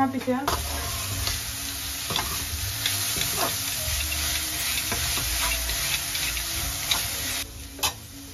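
Shredded cabbage sizzling in a hot, oiled black wok, stirred with a steel spatula that clicks and scrapes against the pan. The frying hiss starts abruptly about half a second in and cuts off suddenly near the end.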